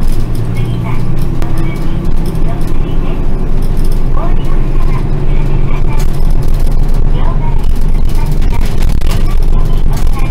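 A route bus under way, heard from inside the cabin at the front: its engine runs steadily with a low hum, alongside road noise.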